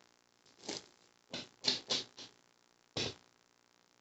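Tarot cards being shuffled and handled: about six short, soft rustles and snaps.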